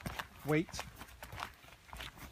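Footsteps on a wet gravel track: a few irregular short crunches as someone walks.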